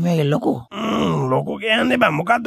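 Speech only: a man's voice talking, with drawn-out, wavering sounds and a short break about two-thirds of a second in.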